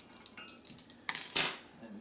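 Plastic measuring spoons clinking and a spoon knocking against a stainless steel saucepan as a tablespoon of canning salt is added to pickling brine. There are a few light clicks, then one louder clatter about a second and a half in.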